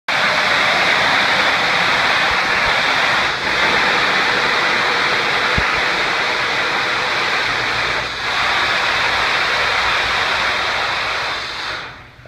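Compressed-air slusher hoist running: a loud, steady rushing hiss of its air motor, still working as it should. It dips briefly twice, then dies away just before the end as the air is shut off.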